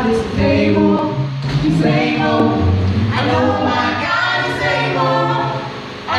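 Small mixed group of four voices singing a gospel song a cappella in harmony through handheld microphones, with a strong low bass line under the melody; the phrase tails off near the end.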